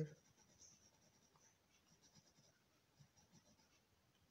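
Faint scratching of a pencil drawing short strokes on paper.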